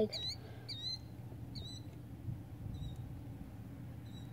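A small bird chirping a few times, short high chirps that thin out after the first couple of seconds, faint over a low steady hum.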